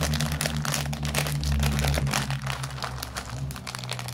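Plastic candy bag crinkling as it is torn open and handled, a dense run of crackles, over a low steady hum.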